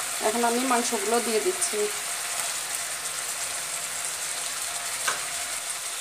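Spiced onion masala frying in oil in a nonstick pan: a steady sizzle as the masala bubbles. A voice speaks briefly over it near the start.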